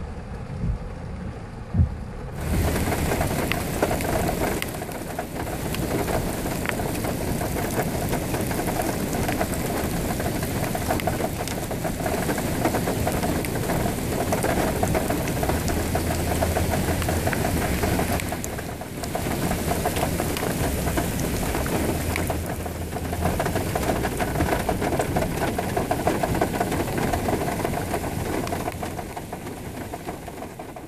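Heavy rain pelting a car during a storm, heard from inside: a dense, steady patter that comes in suddenly about two seconds in, after a quieter start with a few knocks.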